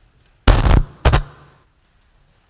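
A large wafer of consecrated bread broken close to the altar microphone: two loud sharp cracks about half a second apart, the breaking of the bread at the Eucharist.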